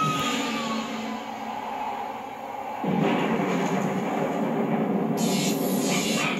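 A siren wail falling away and fading in the first second, then a steady rumbling noise like a train that jumps louder about three seconds in, with a high hiss joining near the end.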